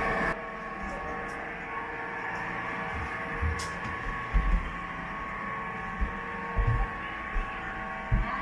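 A steady hum runs throughout, with several dull, low thumps from about halfway through. The thumps come from footsteps and handling of the recorder while walking.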